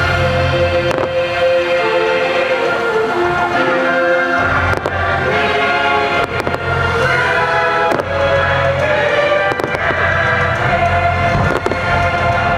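Fireworks going off in several sharp bangs scattered through, over loud show music with long held notes.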